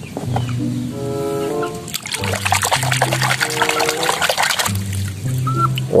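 Water splashing and sloshing in a plastic basin as a toy is swished through it by hand, for nearly three seconds starting about two seconds in, over background music with a slow melody and a bass line.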